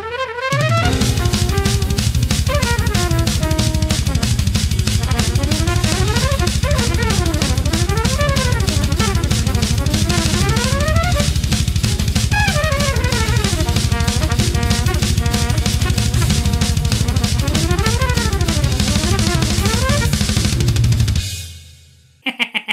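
A large drum kit played fast and dense in metal style, with a rapid, unbroken stream of bass-drum and cymbal strokes, over a fast bebop jazz recording whose trumpet runs go quickly up and down. The music fades out about a second before the end.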